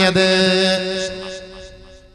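A man's voice holding one long chanted note at the end of a phrase, fading away over about two seconds.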